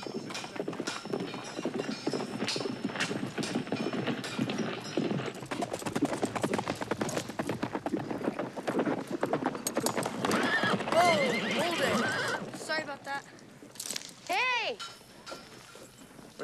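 Several horses galloping on packed dirt, a dense clatter of hoofbeats, with horses whinnying about ten seconds in and again near the end as the hoofbeats thin out.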